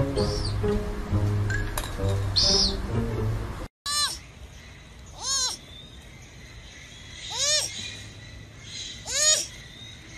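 Background music for the first few seconds, then, after a cut, a baby sloth calling four times. Each call is a short, high squeal that rises and falls in pitch.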